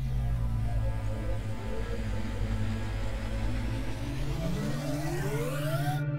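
Cinematic title-card transition sound: a deep, steady electronic drone with sweeping noise in the high range, and a tone rising in pitch over the last two seconds.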